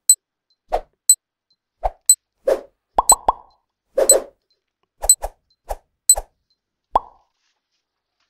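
Countdown timer sound effect: a short high tick about once a second, with quick pops in between, stopping about a second before the end.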